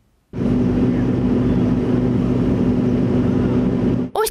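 Heavy diesel engine of road-works machinery running steadily at constant speed with a low, even hum. It cuts in abruptly about a third of a second in.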